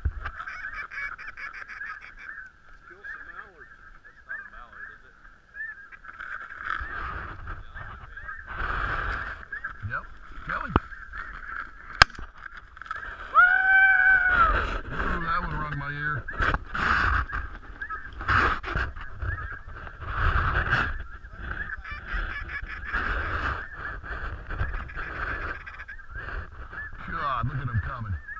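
A large flock of geese honking nonstop, many overlapping calls, with wind gusting on the microphone. There is one sharp click about twelve seconds in.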